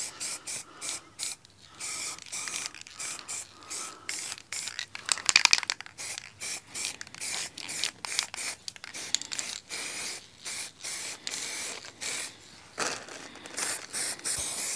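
Aerosol spray-paint can hissing in many short, irregular bursts, stopping and starting every fraction of a second as black paint is sprayed on in thin passes.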